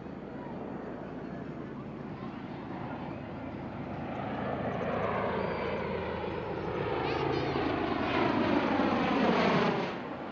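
Bell Boeing MV-22 Osprey tiltrotor flying in helicopter mode, its twin turboshaft engines and proprotors growing steadily louder as it comes in low overhead. The pitch sweeps downward as it passes. The sound drops off suddenly just before the end.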